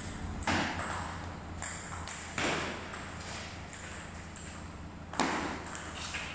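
Table tennis ball striking paddle and table: four sharp clicks spaced unevenly, the loudest near the end, each echoing in a large bare hall.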